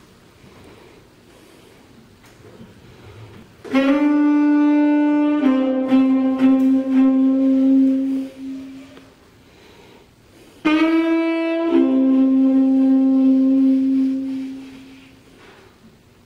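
Unaccompanied saxophone playing two slow phrases, about four seconds in and again about ten seconds in. Each is a short note that drops to a long held lower note, which then fades away.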